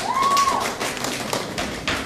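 Audience applause: many hands clapping irregularly, with a brief high-pitched call rising and falling near the start.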